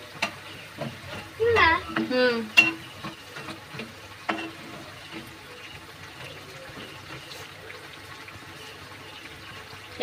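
Jalebi frying in a pan of hot oil: a steady sizzle with a few sharp pops. A brief voice is heard about one and a half to two and a half seconds in.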